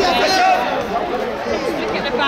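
Many voices chattering at once in a large sports hall: spectator talk around the mat, with no single speaker standing out.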